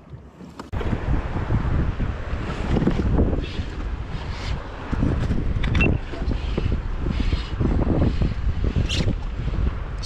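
Gusty wind buffeting the microphone, a loud low rumble that swells and dips, over the wash of sea water around the kayak. A few short knocks cut through it.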